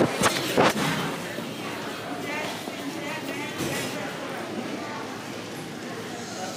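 Background chatter of voices in a busy room, with a few sharp knocks in the first second.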